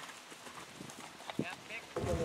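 Horses' hoofbeats on grass, faint dull thuds at a gait, with one sharper knock a little after halfway.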